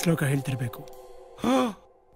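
A man's short voiced sound, like a sigh, that rises and falls in pitch about one and a half seconds in, following a few quick words of dialogue.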